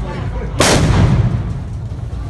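A large firework charge in a red tube standing on the road goes off with one loud blast about half a second in, followed by a short low rumble as it dies away.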